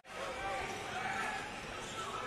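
Game sound of a live basketball match in an indoor arena: a steady crowd murmur with faint distant voices and a ball bouncing on the hardwood court. It rises in from near silence at the start after an edit.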